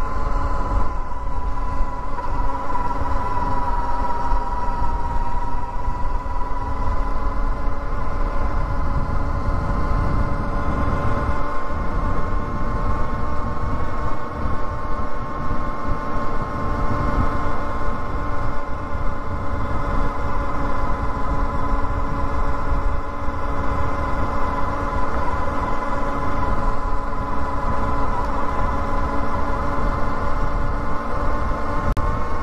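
Electric motorbike's motor whining steadily at cruising speed, a near-constant tone with overtones, over a low rumble of wind on the camera microphone.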